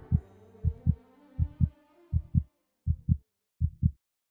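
Heartbeat sound effect: low paired lub-dub thumps at a steady pace of about 80 beats a minute, the sound of a pounding heart. Over the first two seconds a held musical tone fades away beneath it.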